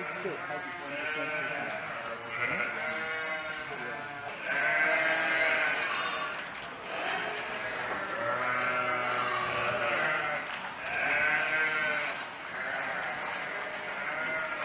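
A flock of housed sheep bleating, many long wavering calls overlapping one after another.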